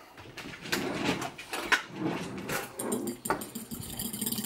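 A fork whisking raw egg in a ceramic bowl: quick, irregular clicks and scrapes of the fork against the bowl.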